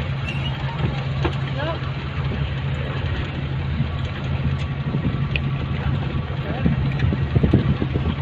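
Car engine running with road noise, heard from inside the vehicle while it drives: a steady low drone.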